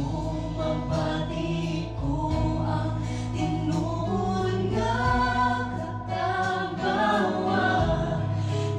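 A mixed group of women and a man singing a Cebuano gospel song in harmony into microphones, over sustained low keyboard notes.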